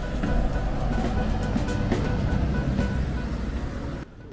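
A bus passing close by, its engine running loudly, over music playing in the background.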